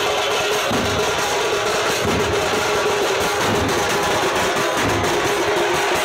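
Loud procession band music: large hand-carried bass drums beating in an irregular pattern under a continuous held melody.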